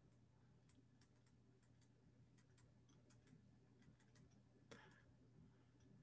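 Near silence: faint scattered stylus ticks and taps as handwriting is written on a tablet, over a faint steady low hum. A slightly stronger tap comes about three-quarters of the way through.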